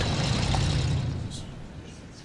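Low rumble of a car engine, fading away over the two seconds.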